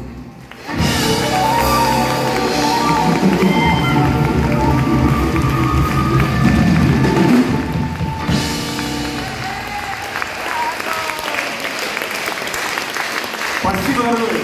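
Live band playing the closing bars of a song, with pitched instrument lines over drums, stopping about eight seconds in. The audience then applauds steadily.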